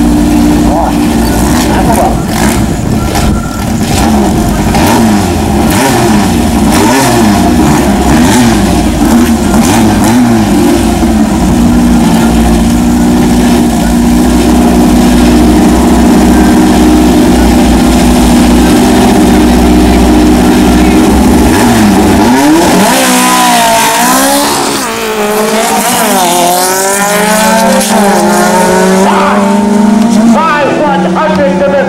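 Drag-racing VW Beetle's air-cooled flat-four engine idling and being revved at the start line. About 22 seconds in it launches and accelerates hard, the pitch climbing again and again as it goes up through the gears.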